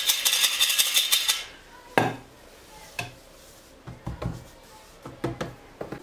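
Metal flour sifter being worked over dough, shaking wheat starch out with a fast, even rattling clatter for about the first second and a half. After that come a few separate sharp knocks on a wooden board.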